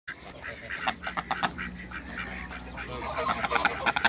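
A group of domestic hybrid mallard ducks quacking in quick, short calls, which come thicker toward the end.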